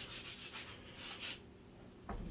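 Faint rubbing noise from a hand-held camera being handled as it pans, dying down about a second and a half in.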